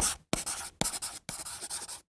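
Writing sound effect of chalk scratching on a blackboard, laid down in about four separate scratchy strokes with short silent gaps between them.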